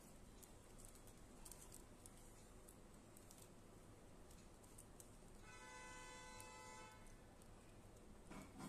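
Near silence: faint, scattered light clicks of plastic basket wire being handled and threaded. About five and a half seconds in, a faint steady pitched tone sounds for about a second and a half.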